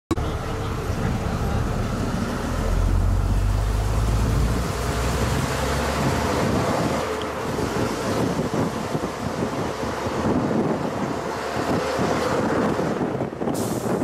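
Open-top bus running under way, its engine rumble mixed with wind buffeting the microphone on the open upper deck. A few seconds in, a deeper rumble swells for about two seconds. There is a short sharp knock near the end.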